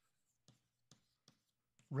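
Chalk writing on a blackboard: four short, faint taps and scrapes of the chalk, about one every half second.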